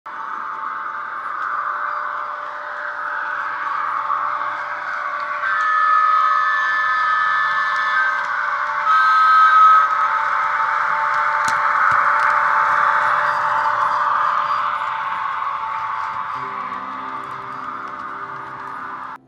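EFE Southern Region booster model locomotive's LokSound sound decoder playing electric locomotive running sounds through its upgraded speakers, with steady pitched tones sounding for a few seconds in the middle. Music starts near the end.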